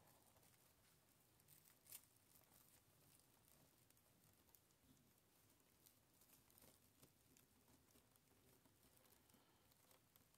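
Near silence, with a few faint crinkles of plastic deco mesh being handled, the most noticeable about two seconds in.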